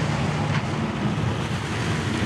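Steady rush of wind and water aboard a sailing catamaran under way, with wind rumbling on the microphone.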